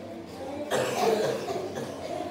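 A single loud cough close to the microphone, about two-thirds of a second in and lasting under a second, over a low murmur of children.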